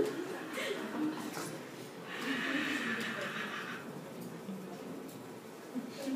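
A hammer head being rubbed briskly against a forearm, a dry scraping and rubbing noise for nearly two seconds starting about two seconds in. The rubbing is meant to charge the hammer with static electricity. Faint murmuring and chuckling run underneath.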